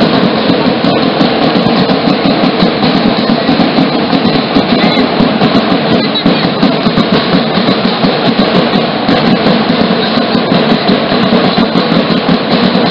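Danza apache drumming: loud drums keeping a steady, rapid beat for the dancers.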